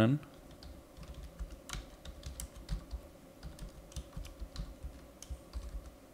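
Typing on a computer keyboard: light, irregular key clicks as a line of code is entered.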